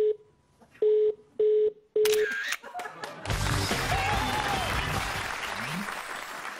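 Telephone busy tone heard through the receiver: short beeps at one steady pitch, about two a second, as the line goes dead after the other party hangs up. From about three seconds in, the show's title music takes over.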